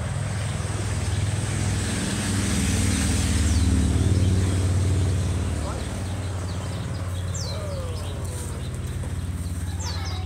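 Outdoor background sound: a steady low hum that swells in the middle and eases off again, with a few short high chirps and faint distant voices.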